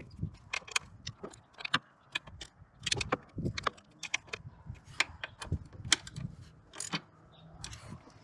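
Irregular light metallic clicks and clinks of hand tools and fasteners as the throttle body is refitted to the engine's intake.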